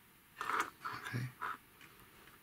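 Short rubbing and clicking of plastic tubing being worked onto the nozzle of a small plastic hydraulic cylinder, in a few brief bursts near the middle, with a spoken "okay".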